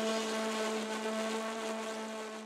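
A held synthesizer drone, one steady low note with overtones, slowly fading out as the electronic music track ends.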